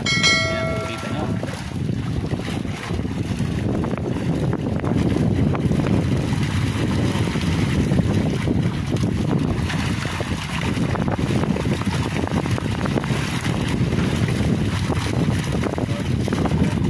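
Harvested tilapia splashing and thrashing in a net pulled up at a fish cage, with wind on the microphone throughout. A short bright chime sounds in the first second and a half.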